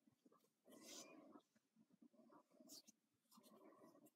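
Near silence, with faint rustling and a few tiny ticks from a crochet hook working double-knit wool.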